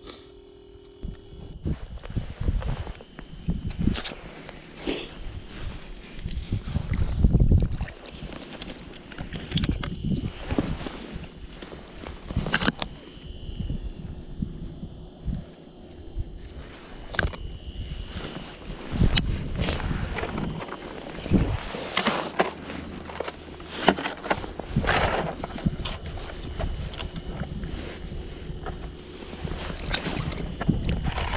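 Irregular low rumbling with scattered knocks and rustles: wind and clothing rubbing on a chest-mounted camera's microphone while fish are handled and unhooked on the ice.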